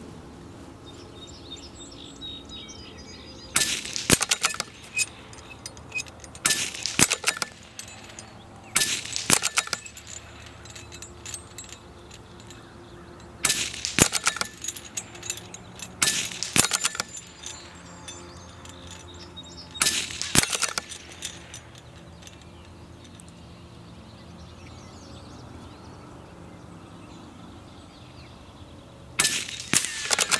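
A CZ-455 Trainer .22 LR bolt-action rifle firing seven shots, spaced about 2 to 9 seconds apart with a long pause before the last one near the end. Each shot is a sharp crack with a brief clattering tail, fired at hanging steel plates 75 yards away.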